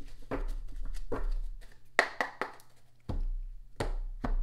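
Hands handling things on a tabletop: irregular taps and knocks, the sharpest about two seconds in, over a low steady hum.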